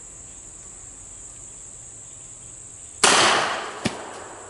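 A single .45 ACP shot from a 1917 Smith & Wesson revolver about three seconds in, loud and sharp, ringing out for most of a second. A faint sharp tick follows just before the end. Insects chirp steadily throughout.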